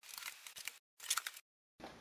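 Packing tape on a cardboard box being cut open: two short bursts of slitting and crackling, the second about a second in.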